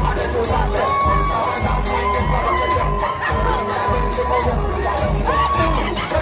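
A concert crowd cheering and shouting over loud backing music with a steady beat. From about a second in, one voice holds a long high note for a few seconds.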